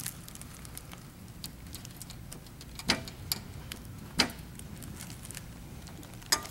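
Metal glazing points being pressed into a wooden window sash with a putty knife: a few sharp clicks, the clearest about three seconds in and again just after four, over a low steady hum.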